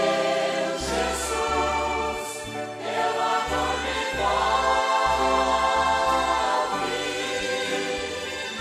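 A congregation singing a Portuguese worship hymn together, accompanied by violins and a band with a bass line underneath.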